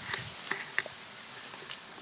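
Quiet steady hiss with a few faint, sharp clicks spread through it: handling noise from a handheld camera being moved.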